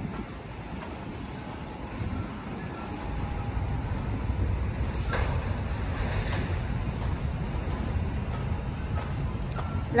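Steady low rumble of open-air ambience with faint distant voices.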